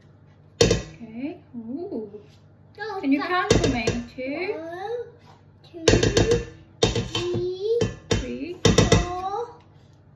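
A metal tablespoon knocks against a stainless-steel mixing bowl, shaking spoonfuls of butter into it: once about a second in, again at about four seconds, then a run of taps from about six to nine seconds. A child's wordless voice chatters between the knocks.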